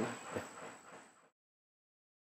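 The tail of a man's last word, then faint background hiss with a single short click about half a second in. The sound cuts off to complete silence a little over a second in.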